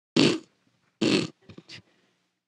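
A woman giving two short, deliberate coughs into a handheld microphone, followed by two faint little sounds; the coughs are put on to get someone's attention.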